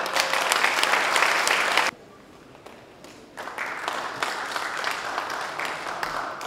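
Audience applause in a large hall. It cuts off abruptly about two seconds in. A second, softer round of applause starts about three and a half seconds in.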